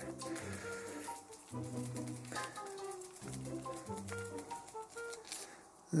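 Soft background music: a melody of held notes, a new note about every second.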